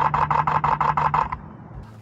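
Canon EOS R5 shutter firing a rapid continuous burst, about nine clicks in just over a second, capturing a thrown hoop in mid-air.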